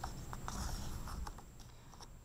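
A picture book's paper page turned by hand: a soft rustle and slide of paper with a few light ticks, dying away near the end.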